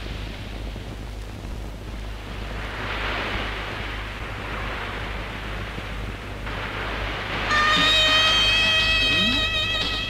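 Film soundtrack: a rushing noise that swells and fades over a steady low hum. About seven and a half seconds in, music enters loudly with sustained high notes.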